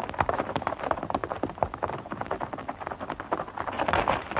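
Horses galloping: a rapid, irregular clatter of hooves on hard ground.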